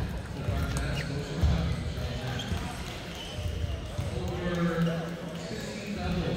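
Table tennis ball clicking off paddles and the table in a short rally, over the steady chatter of many voices in a large sports hall.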